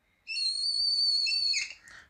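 Whiteboard marker squeaking as a line is drawn: one steady, high-pitched squeal lasting a little over a second, ending in a short scratch.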